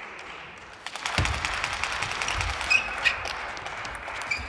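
Table tennis ball being hit back and forth in a rally: a few sharp clicks of ball on bat and table, some with a short high ping, the loudest pair about three seconds in. Under them is a rushing noise with a couple of low thuds.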